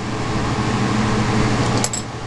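Steady rushing hum of running workshop equipment, like a fan or the air of a lit torch, with a light click near the end.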